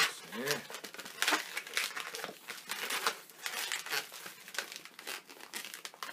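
Long latex modeling balloons being twisted and bent by hand, the rubber rubbing and squeaking against itself and the fingers in short, irregular strokes, with a brief gliding squeak about half a second in.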